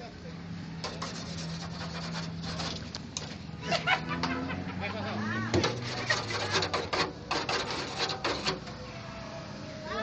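Indistinct voices over a steady low hum, with a quick run of sharp clicks and knocks in the second half.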